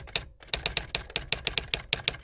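Rapid typing on keys: a quick run of sharp clicks, about seven a second, with a brief break about a third of a second in. It is most likely a typing sound effect laid in to go with the talk about a computer keyboard.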